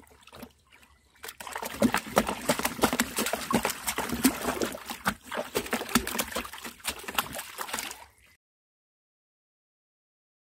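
A dog splashing and sloshing about in a plastic tub of water, starting about a second in, in quick irregular splashes. The sound cuts off abruptly near the end.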